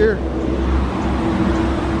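A motor vehicle going by on a road, a steady hum with road noise that stops near the end.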